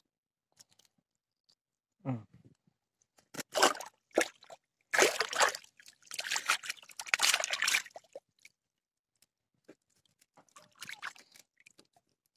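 Water sloshing and splashing in irregular bursts as a mesh keep net holding a freshly caught tilapia is handled in the shallows, starting about three seconds in and dying away after about eight seconds.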